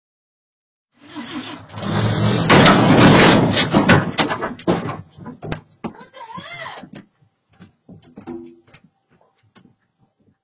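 A pickup truck rolling back into a wooden porch: a loud crash of its load of lumber breaking through the porch railing, with a dense run of wood knocking and clattering for about three seconds. Then scattered knocks and clatters of settling boards, fading out.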